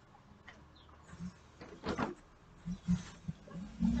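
Low male voices murmuring: short low hums and a breathy sound, with a longer 'mm' near the end.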